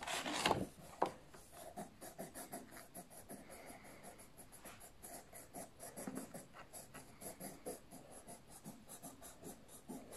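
Soft coloured pencil scratching on paper in quick, faint back-and-forth strokes, a few a second, as the letter is shaded in, with a louder rustle at the start.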